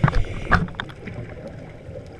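Underwater sound of a scuba diver's regulator exhaling: bubbling, gurgling bursts in the first half-second or so, then a quieter steady underwater hiss.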